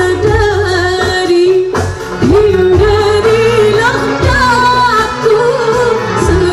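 Woman singing a gambus-style qasidah through a stage PA, her melody wavering in ornamented turns, over electronic keyboards and hand drums.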